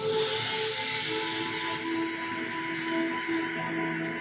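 Soundtrack music with held tones, over which a hissing, rushing swell of noise rises at the start and fades away over about two seconds.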